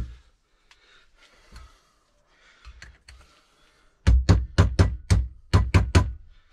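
Claw hammer striking a short PVC pipe used as a drift, about ten quick taps in the last two seconds, driving an oven-heated bearing down onto a freezer-chilled differential carrier. A single knock comes right at the start.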